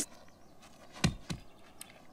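Two short, soft cartoon sound effects, a quarter second apart about a second in, each dropping quickly in pitch, over an otherwise quiet soundtrack.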